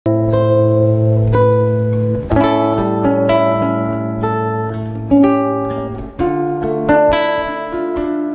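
Slow instrumental introduction of a ballad played by a live band: plucked, guitar-like chords struck about once a second and left to ring over low held bass notes.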